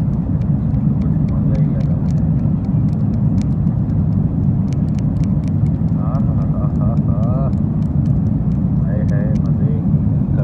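Steady low airliner cabin drone in flight, with scattered light clicks of a plastic fork against an aluminium foil meal tray. Faint voices talk in the background, most clearly after about six seconds.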